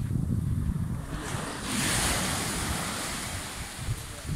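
Small North Sea waves breaking and washing up a sandy shore, a hiss that swells about one and a half seconds in and slowly fades, with wind rumbling on the microphone.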